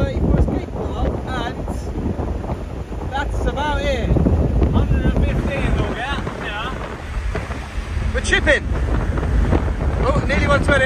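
Steady wind rush and road rumble inside a classic BMW at motorway speed, with wind buffeting through the open driver's window. A man's voice breaks in briefly a few times over the noise.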